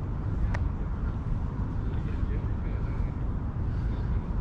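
Steady low outdoor rumble picked up by a body-worn action camera while walking, with a single sharp click about half a second in.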